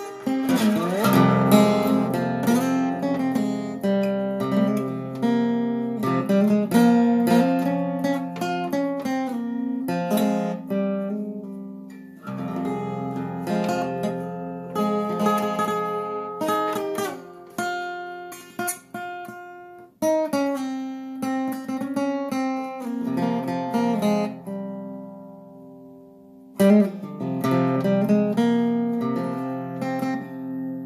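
A 1930 Regal resonator guitar played solo: plucked notes and chords in a continuous passage. About three-quarters of the way through, a chord is left ringing and fading before a sharp new attack resumes the playing.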